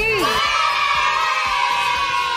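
Sound effect of a group of children cheering, starting suddenly and loud, then slowly tailing off, over background music.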